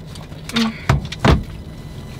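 Three brief knocks and rustles close to the microphone, about half a second, one second and just over a second in, over low car-cabin noise.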